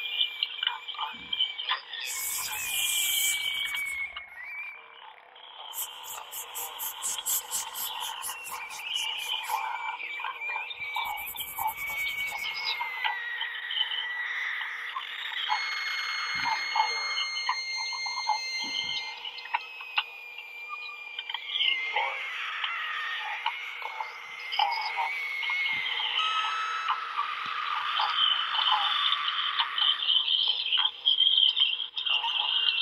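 Non-verbal improvised voice performance: high squeaks and thin whistle-like tones gliding slowly in pitch, over croaking, rasping sounds and scattered clicks. A fast high rattling comes in short bursts near the start.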